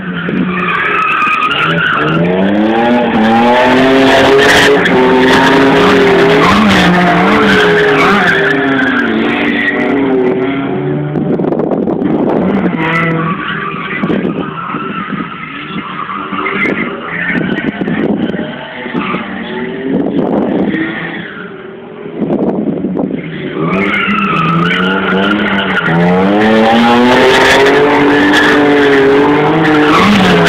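Drift cars, a Toyota AE86 Corolla and a BMW, revving hard and sliding sideways with their tyres squealing, the engine note climbing and dropping again and again through the drifts. It is quieter for a stretch in the middle and loud again in the last few seconds as the AE86 slides close by.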